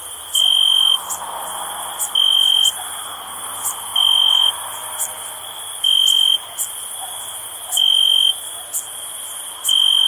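Night insect chorus: a cricket trilling in loud, clear, high half-second bursts about every two seconds, six times, over a steady high-pitched hiss of other insects with short rapid chirps.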